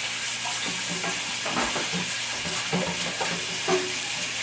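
Steady background hiss, with faint, indistinct voices now and then.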